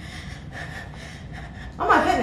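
A girl hyperventilating in panic, taking rapid, short gasping breaths in and out, several a second. Near the end a loud voice breaks in.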